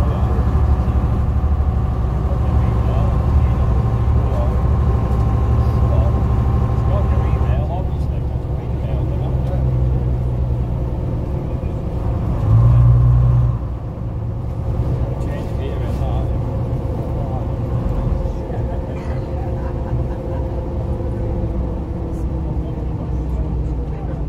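Interior of a Bristol RELH coach under way: its diesel engine and transmission running steadily with a whining note that drops away about a third of the way in, a brief louder low burst about halfway through, and slowly falling tones as the coach goes on.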